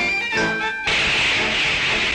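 Orchestral cartoon music, cut off just under a second in by a loud steam hiss that lasts about a second: hot iron being quenched in a barrel of water.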